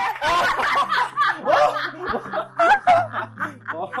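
People laughing in a quick run of short bursts and giggles, celebrating a win.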